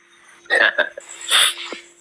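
Two short breathy vocal sounds from a person close to a phone microphone, about a second apart, over a steady low hum.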